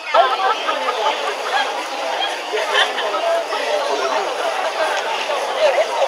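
Crowd chatter: many people talking at once, with no one voice standing out.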